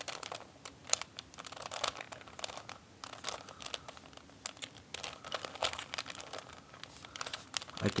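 Plastic 3x3 Rubik's cube being turned by hand. Its layers rotate and snap into place in a run of quick, irregular clicks and clacks.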